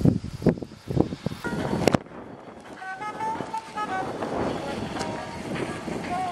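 Wind buffeting the microphone in loud, irregular gusts. About two seconds in there is an abrupt cut to quieter outdoor noise, with faint held notes that step up and down in pitch.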